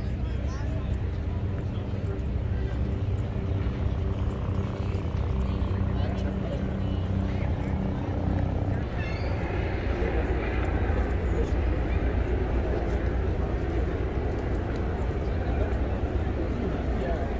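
Outdoor chatter of many people talking at once, with a steady low engine hum of constant pitch underneath that stops about halfway through.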